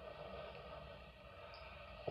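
Faint steady background hum and hiss, with no distinct sound event.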